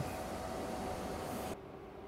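Lithium battery charger with a built-in cooling fan running during a charge: a faint steady whirr with a thin hum. About one and a half seconds in the sound drops suddenly to a quieter, lower hum.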